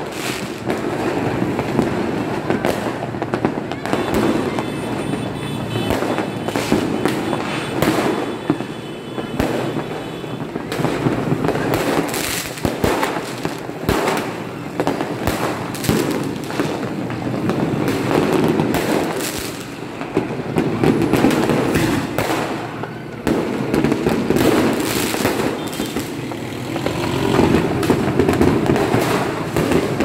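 Fireworks and firecrackers going off all around in a dense, continuous barrage of bangs and crackles, over a steady background roar.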